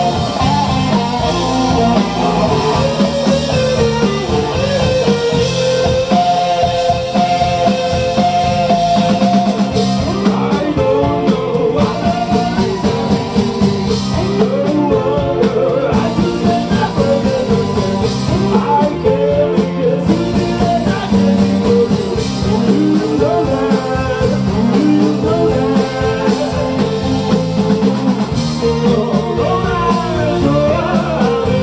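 Live rock band playing a song at full volume: electric guitars, bass guitar and drum kit, with singing.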